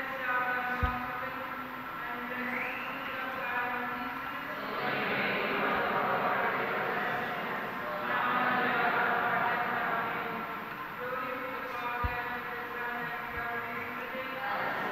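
Slow church hymn music with long held notes that change pitch every second or two. A low thump sounds about a second in and another near the end.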